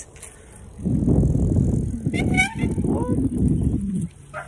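Wind rumbling on the phone's microphone while riding a bicycle, starting about a second in, with a few brief high-pitched sounds around the middle.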